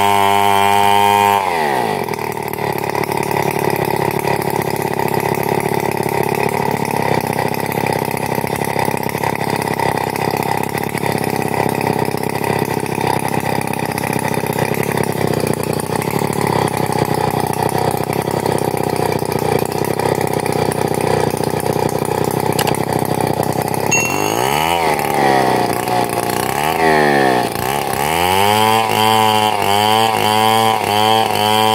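Two-stroke chainsaw ripping a log lengthwise into planks. The engine note drops about two seconds in as the chain bites into the wood, and runs lower and rougher under load for some twenty seconds. Near the end it revs up and down a few times, then holds at high speed.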